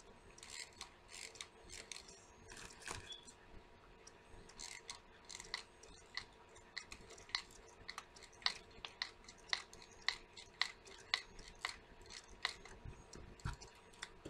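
Hot glue gun trigger being squeezed over and over as glue is pushed out, a series of short, sharp clicks. They are faint and uneven at first, then come about two a second.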